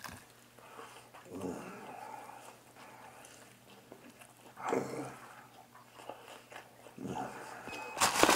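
A man eating noisily, biting into fried food and chewing, in a few short bouts of mouth noise.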